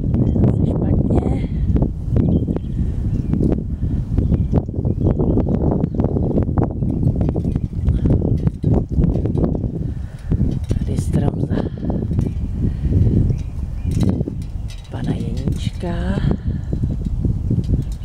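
Strong wind buffeting the microphone: a loud, gusting low rumble with scattered sharp clicks, and a brief wavering pitched sound near the end.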